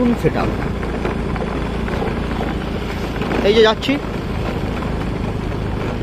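Motorcycle running steadily while being ridden, a low even engine and road-and-wind noise.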